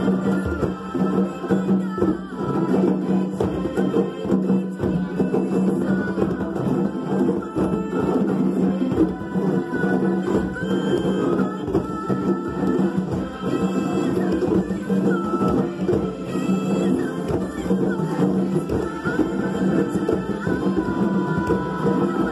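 A group of children playing hand drums together along with a recorded song with singing; the drumming and music run steadily throughout.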